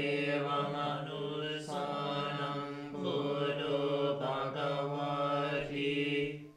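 Buddhist monks chanting together at evening puja, a low, nearly level recitation that moves syllable by syllable on an almost steady pitch.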